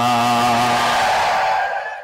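A man's voice holding one long chanted note, in the sing-song delivery of a Bengali waz sermon, through a microphone and loudspeakers. About a second in the note fades into an echoing tail that dies away near the end.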